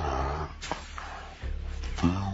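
Cartoon bull lowing, slowed down so it sounds deep and drawn out, falling in pitch over the first half-second, over background music with a couple of soft knocks.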